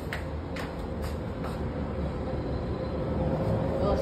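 Steady low outdoor rumble, growing slightly louder, with a faint steady hum and a few light taps in the first second and a half.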